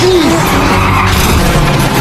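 An old V8 muscle car skidding sideways through dirt, tyres scrabbling, with engines running hard in a two-car race. A steady engine note comes through in the second half.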